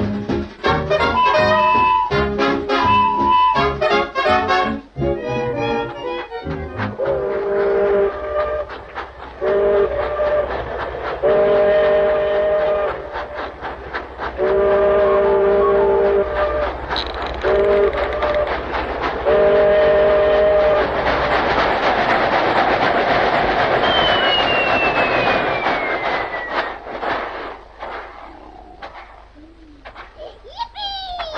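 Cartoon soundtrack: brass-led music for the first few seconds, then a steam-train whistle sounding a chord in about six separate blasts. A hiss of steam then swells, with a falling whistle near the end, and the sound fades away.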